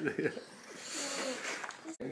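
People laughing, with a short spoken "yeah" and breathy laughter; the sound cuts off suddenly at the end.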